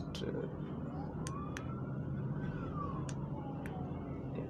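A siren wailing faintly, its pitch rising slowly and falling back over about three seconds, over a low steady background with a few faint clicks.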